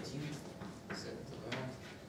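Chalk on a blackboard: a few short taps and scrapes as small characters are written, over faint murmured voices in the room.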